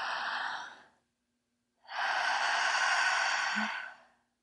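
A woman doing strong abdominal breathwork through the mouth: a deep breath in fades out about a second in, and after a short pause a louder breath of about two seconds is pushed out through the mouth.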